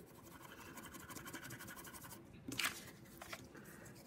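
Blue wax crayon scribbled over paper in quick back-and-forth strokes, laying down a light coat of colour, for about two seconds; then a few brief, separate scuffs on the paper.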